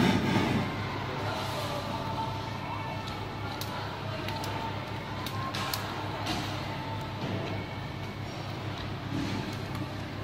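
Restaurant background noise: a steady low hum with a faint wavering sound above it and a few sharp clicks. A louder low thump comes right at the start.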